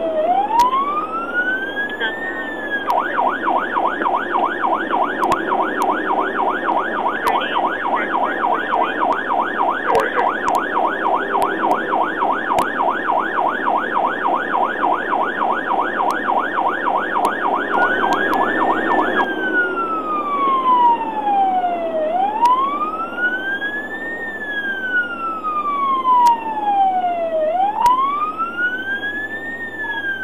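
Police patrol car siren sounding over steady road noise. It runs in a slow rising-and-falling wail, switches about three seconds in to a fast yelp for some sixteen seconds, then goes back to the slow wail.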